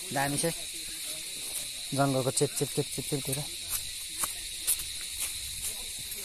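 Steady high-pitched drone of insects in woodland. A person's voice comes in briefly at the start and again about two seconds in. Light footsteps click on dry leaf litter in the second half.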